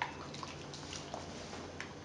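A bare hand stirring a liquid mix of beaten eggs, sugar and melted butter and oil in a ceramic bowl. It gives faint wet squishing and sloshing with scattered small clicks.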